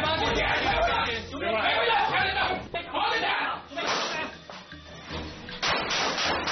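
Men's voices talking and calling out indistinctly among a group of officers, over background music, with a few brief sharp knocks.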